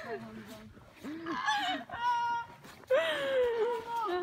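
High-pitched, drawn-out voices calling and coaxing a dog. A steady high call comes about halfway, and a long falling call near the end.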